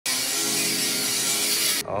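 Angle grinder cutting into the steel rear fender lip of a BMW E36, a continuous hissing grind that stops abruptly near the end.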